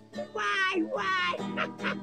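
A man singing loudly and nasally over a strummed acoustic guitar: two long, high, wavering cries that slide downward, then a run of quick laughing bursts, about four a second.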